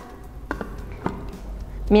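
Two light plastic knocks, about half a second apart, as the lid is fitted onto a blender jar, over a low steady hum.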